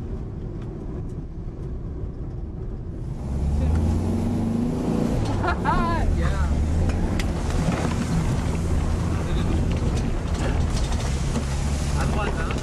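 A car driving on a rough road: steady low engine hum with road and wind noise, louder and fuller from about three seconds in.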